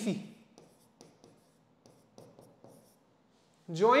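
Pen stylus writing on an interactive whiteboard screen: a run of short, faint taps and scratches, with a man's spoken words just at the start and near the end.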